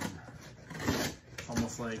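A knife slicing through the packing tape on a cardboard shipping box, with the cardboard scraping and rustling, loudest about a second in.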